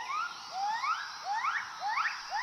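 Gibbon calling: a series of rising whooping notes, each sliding up in pitch, coming quicker one after another.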